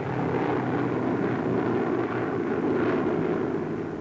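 Propeller engines of four-engine B-24 Liberator bombers in flight, a steady low drone with no change in pitch.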